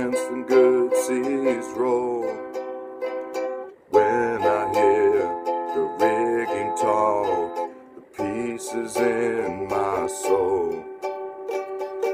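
Ukulele strummed in steady chords with a man singing a slow sea-song melody over it, in phrases. The playing and singing drop away briefly twice, about four and eight seconds in.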